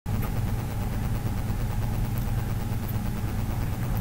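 A steady low hum with no words, its energy held in a few low, unchanging tones.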